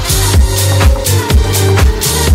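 Electronic dance music from a DJ mashup mix: a steady kick drum about twice a second over a bass line, with no vocals.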